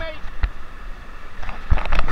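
Water rushing and wind buffeting the camera as a rider in an inflatable tube sets off down a water slide, with a few sharp knocks from the tube near the end.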